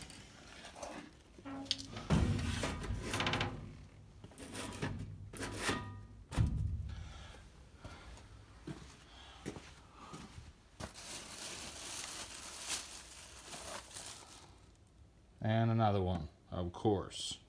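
Handling noise from boxed die-cast toy cars being moved and picked up off a shelf: scattered knocks and bumps, then a few seconds of rustling packaging past the middle. A brief vocal sound comes near the end.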